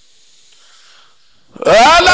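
A man's voice chanting Quran recitation in the melodic mujawwad style enters loudly about one and a half seconds in, after a pause with only faint hiss. It rises into a long, drawn-out phrase.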